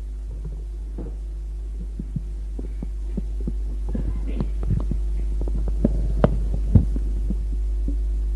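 Steady low electrical hum of an old tape recording, with irregular soft knocks and clicks that come more often from about halfway through, the sharpest near the end.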